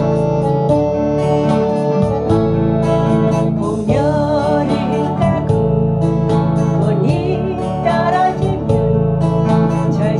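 Steel-string acoustic guitar strummed in a steady rhythm, playing a song accompaniment.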